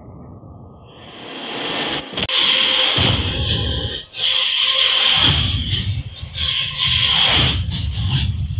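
Film-trailer soundtrack played through Baseus Eli Fit Open open-ear earbuds and picked up at the ear: a rising whoosh over the first couple of seconds, then loud dramatic music and effects with heavy low booms, broken by a brief drop about four seconds in.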